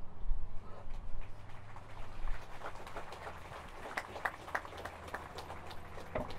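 Outdoor ambience: wind rumbling on the microphone, with scattered short chirps and clicks that grow busier from about two seconds in.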